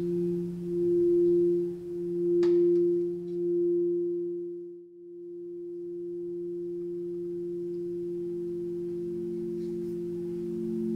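Quartz crystal singing bowls ringing with long, pure sustained tones. For the first half two notes beat against each other in slow swells of loudness, fading to a dip about five seconds in; then a single steady tone holds, and a lower note swells in near the end.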